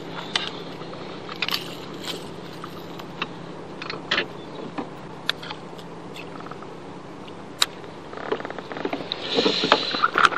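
Scattered sharp clicks and taps of metal pliers and a crankbait's hooks as the lure is worked free of a small bass's jaw, over a steady low hum. A louder rustling noise builds in the last two seconds.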